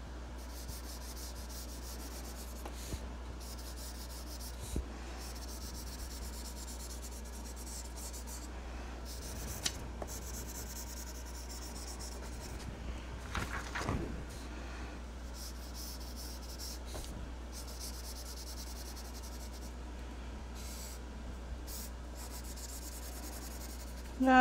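Chisel tip of an Ohuhu alcohol marker stroking back and forth over a paper coloring page, a soft scratchy rubbing that comes and goes with each pass, over a steady low hum.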